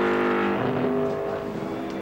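NASCAR Cup car's pushrod V8 engine on a qualifying lap, off the throttle while braking into a turn: a steady engine note that softens and fades about half a second in.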